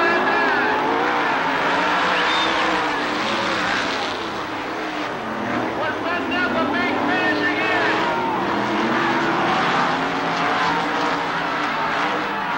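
A pack of winged sprint cars racing on a dirt oval, their V8 engines rising and falling in pitch as they go through the turns and down the straights.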